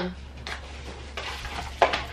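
Light rustling and handling of a cardboard product box and paper sheet, with a faint click about half a second in and a short, sharper sound near the end.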